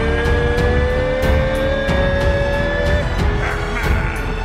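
Background music for a hype edit: a quick steady beat over heavy bass, with a long tone that rises slowly in pitch and stops about three seconds in.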